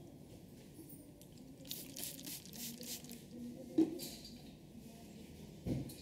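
Hands rubbing and ruffling dry hair during a head massage: a run of short scratchy rustles, with a sharp tap about four seconds in and a duller thump near the end.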